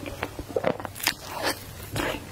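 Close-miked chewing and mouth sounds of someone eating a matcha crepe cake: irregular short smacks and clicks, several a second.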